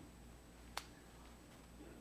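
Near silence broken by a single short, sharp click just under a second in.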